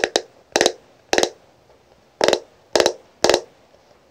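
Fingernails tapping on the lid of a hard plastic makeup compact: about seven short, crisp taps, each a quick flurry of strikes, spaced unevenly with pauses between them.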